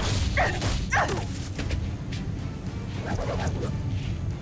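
Short yells of effort from fighters, three falling cries in the first second and another about three seconds in, over background score music.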